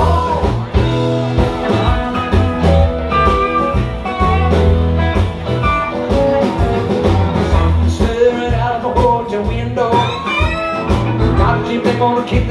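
Live rock band playing an instrumental passage: electric guitar lead over electric bass, drums and keyboards, with bent guitar notes near the end.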